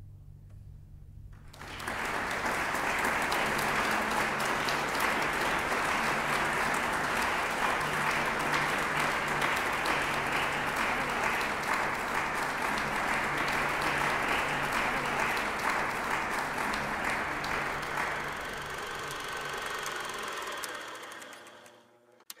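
Audience applauding, starting about two seconds in as the last chord of the piece dies away, holding steady, then fading out near the end.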